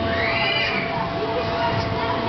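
A single high-pitched squeal from a rider, rising then falling in pitch, over a steady hum.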